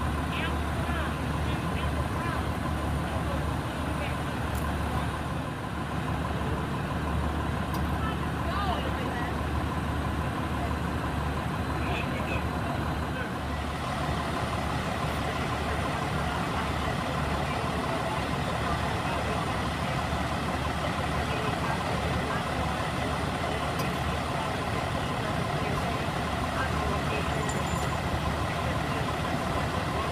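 Steady low rumble of idling fire engines and other emergency vehicles, with indistinct voices mixed in. The background changes about halfway through.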